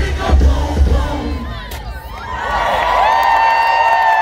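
A live hip-hop set's bass-heavy beat booming through the concert PA, cutting off about halfway through, and then a large crowd cheering and screaming, with a long high note held over it.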